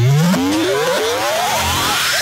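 Dubstep-style electronic music: a revving, engine-like synth that rises in pitch over and over, about every two-thirds of a second, then climbs in one long rising sweep.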